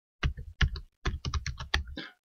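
Typing on a computer keyboard: a quick run of about a dozen keystrokes, starting after a brief pause.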